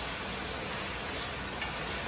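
Chicken pieces frying in a pan, a steady sizzling hiss.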